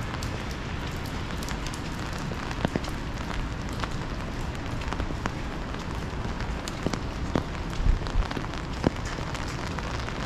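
Rain falling on an umbrella held over the microphone: a steady hiss with many scattered sharp taps of single drops on the fabric, and a few louder knocks between about seven and nine seconds in.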